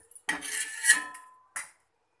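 Metal spatula scraping across a black metal pan: one long scrape with a brief metallic ring near its end, then a short second scrape.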